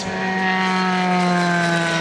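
Engine of a Euroformula Open single-seater race car running at steady high revs as the car passes trackside, its pitch sagging slightly.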